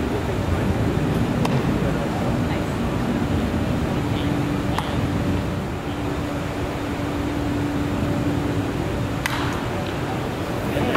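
Steady ballpark crowd chatter with a low steady hum. About nine seconds in, a sharp crack of a wooden bat hitting a pitched baseball on a full swing.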